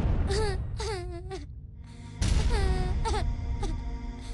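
A young girl crying in two wavering, wailing bursts over soft background music.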